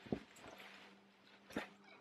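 Quiet rustling of a padded winter coat being pulled on and settled on the shoulders, with two soft thumps about a second and a half apart.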